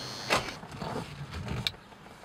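An SUV door shutting with a single loud thud, followed by a few smaller knocks and a sharp click near the end.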